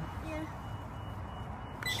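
Steady low background noise with a faint, thin, steady high tone running through it. A short spoken word comes just after the start.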